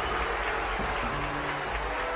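Live electric rock band playing on an old concert recording: a few held notes over a steady haze of hiss and crowd noise.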